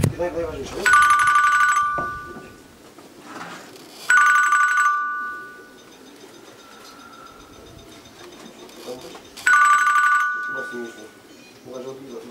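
Electronic pigeon-race clocking system beeping three times at uneven intervals, each a short two-tone electronic beep: a returning racing pigeon's ring registered as it enters the loft.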